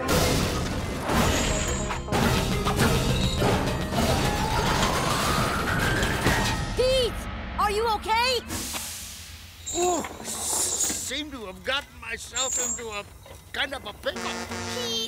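Cartoon crash effects: wooden crates smashing and splintering in a run of crashes, with a rising pitch glide midway. Then short wordless vocal cries come over background music in the second half.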